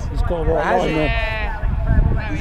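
People talking, half-heard, over a steady low rumble of wind on the microphone.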